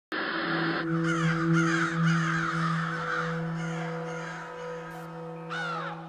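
Crow cawing repeatedly over a steady low musical drone, opening with a short burst of noise; a last caw comes near the end.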